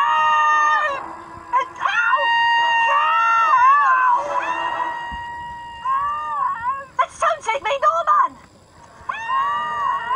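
A voice howling in several long, wavering notes, each held for a second or two and bending up and down in pitch, with a short break near the end.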